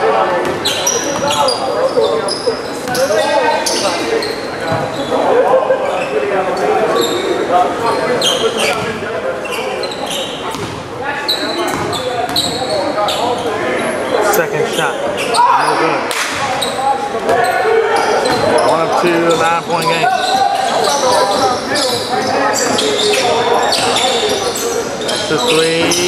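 Unclear voices of players and spectators talking in a large gymnasium, with a basketball bouncing on the hardwood floor during free throws.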